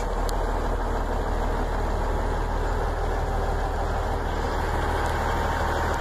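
Cummins N14 inline-six diesel of a 1996 Kenworth T800 idling steadily, heard from inside the cab as an even low rumble.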